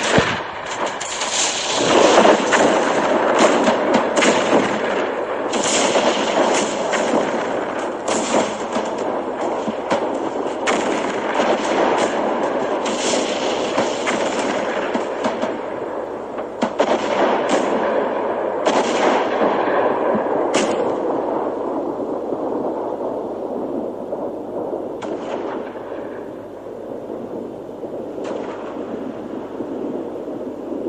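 Recording of First World War artillery and gunfire at the front, played out loud. Dense firing thins out after about twenty seconds, leaving only a couple of isolated shots near the end: the guns ceasing fire at 11 o'clock on Armistice Day.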